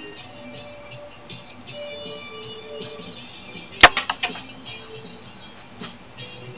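Spring-loaded missile launcher of a G1 Transformers Blitzwing toy firing: one sharp plastic snap about four seconds in, followed by a few lighter clicks. Music plays underneath throughout.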